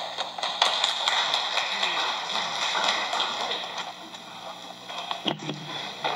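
Scattered applause from a small church congregation, a steady patter of individual claps for about five seconds after the choir's song ends. A man's voice starts near the end.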